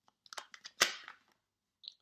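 A deck of tarot cards shuffled in the hands: a quick run of crackling card snaps, one sharper and louder than the rest a little under a second in, and a short soft rustle near the end.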